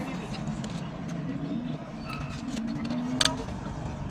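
Low background of street traffic heard from a parked car, with a few faint clicks and one short sharp click about three seconds in.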